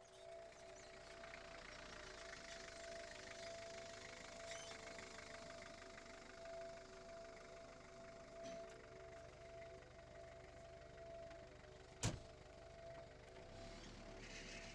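Soft, steady drone of held score tones over faint hiss, with a single sharp car door slam about twelve seconds in.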